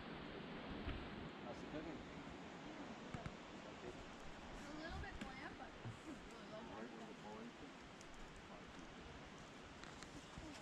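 Faint, indistinct voices of several people talking, over a steady outdoor hiss.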